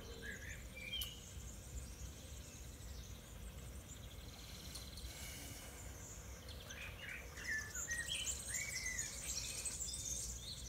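Small birds chirping faintly over a quiet outdoor hush, with a few calls about half a second to a second in and a busier run of chirps in the last few seconds.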